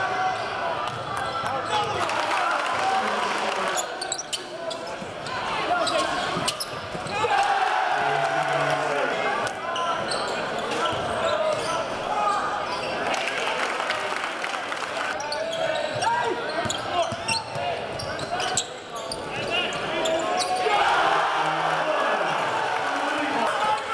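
Live court sound of a basketball game in an echoing gym: the ball bouncing on the hardwood floor as sharp knocks, under indistinct voices and shouts.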